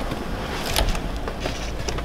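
2002 Chevrolet Avalanche's 5.3-litre Vortec V8 running at a fast cold-start idle, about 1000 rpm, with a steady low rumble. A few sharp clicks come over it, about three-quarters of a second in and again near the end.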